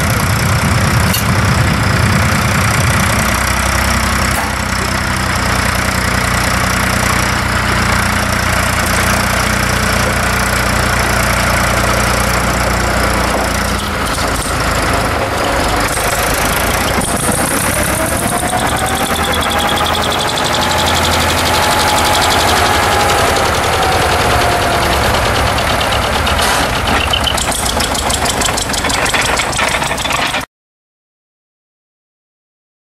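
Vintage tractor engine running steadily as it pulls a plough through the soil and comes close by. About halfway through its low, even note fades back, and a faint whine rises and falls.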